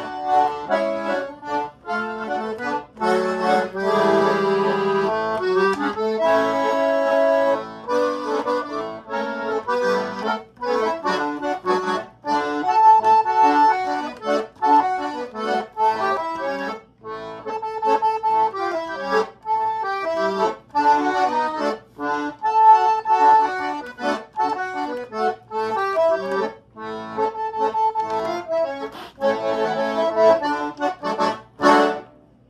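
A Hengel Chemnitzer-style concertina in C played solo: a reedy melody over bass notes and chords, in a steady dance rhythm.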